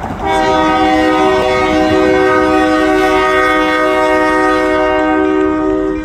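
Union Pacific diesel locomotive's air horn sounding one long, loud blast of several notes at once, lasting about five and a half seconds. It is sounded as the locomotive approaches a road grade crossing.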